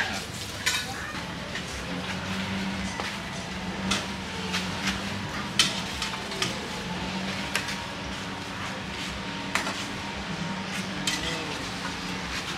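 Scattered clinks and clatter of serving tongs and a plate as seafood is loaded onto it, over a steady low hum and faint background voices.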